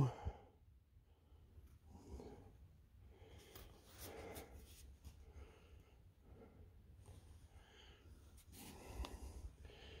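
Almost quiet room, with a few faint, soft rustles and breaths scattered through.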